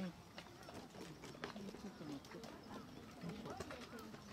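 Indistinct voices talking at a distance, with scattered footsteps and wheelchair wheels on a dirt path.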